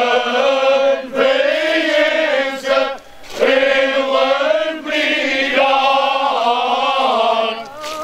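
Unaccompanied male choir singing cante alentejano: slow, sustained vocal lines held by the group, with short breaks for breath about a second in, around three seconds in and near the end.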